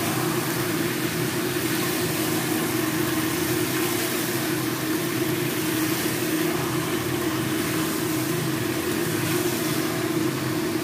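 Steady, unchanging hum with an even hiss over it while chicken and potatoes fry in a wok on a gas stove.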